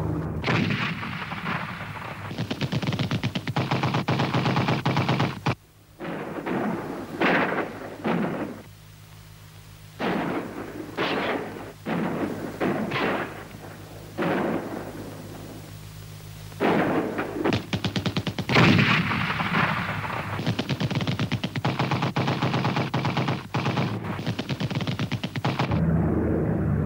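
Rapid machine-gun fire in several long bursts with short pauses between them, over a low steady hum.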